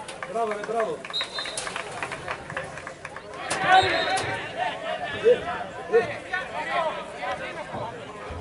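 Men's voices shouting across an outdoor football pitch, several at once from about three and a half seconds in. A short high whistle tone sounds twice.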